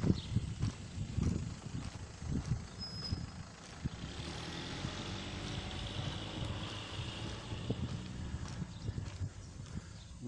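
A motor vehicle running past out of sight. Its sound swells from about four seconds in and fades again near the end. In the first few seconds it is joined by low, irregular thumps of footsteps and handling noise on a handheld camera's microphone.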